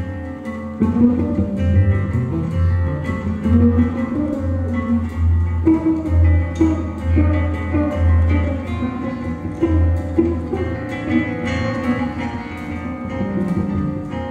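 Live ensemble music: an 8-string Brahms guitar plucked over a moving double-bass line, with drums ticking on top.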